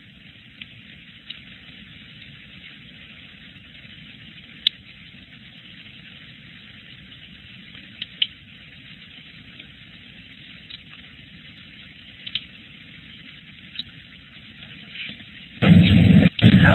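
Steady hiss of an open, phone-bandwidth conference-call line with a few faint clicks, ending in a sudden loud burst as the presenter's microphone comes on.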